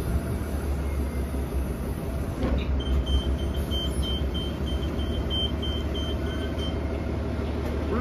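New Flyer XDE40 diesel-electric hybrid bus idling at a stop with a steady low rumble. A high electronic beep comes in about three seconds in and sounds for about four seconds, broken a few times.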